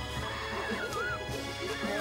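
Cartoon background music with small wavering squeaks from little animated creatures, about a second in and again near the end.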